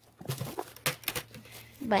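Light, irregular clicks and rattles of a plastic maple-sap bucket and its lid being handled.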